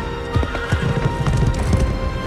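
Orchestral film score under battle sound effects: a run of heavy thuds beginning about a third of a second in, and a shrill animal cry.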